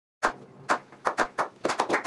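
A few people clapping: single separate claps at first, coming quicker toward the end, like a slow clap building up.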